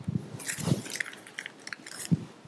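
Soft handling noises close to a microphone: a few low thumps followed by a run of small clicks and rustles, with no voice.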